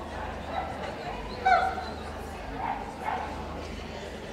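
A dog gives a single short, high-pitched bark about a second and a half in, over a background of people talking.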